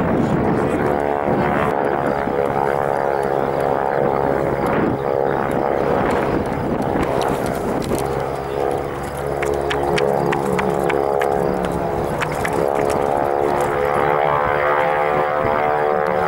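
Grumman Ag-Cat biplane's radial engine and propeller running in flight, a steady drone whose pitch shifts slightly about halfway through.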